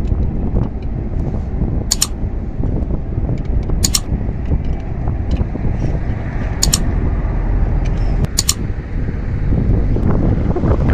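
Wind rumbling steadily on the microphone. Four sharp metallic clinks come a second or two apart as a pipe wrench works on a truck wheel's hub studs.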